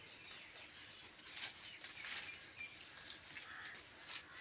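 Faint outdoor ambience with small birds chirping, and brief rustling bursts about one and a half and two seconds in.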